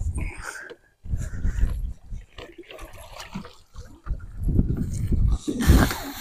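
A blue catfish being landed: water splashing and the landing net with the fish in it hauled over the side into the boat, with wind rumbling on the microphone. There is a louder clatter near the end as the net comes aboard.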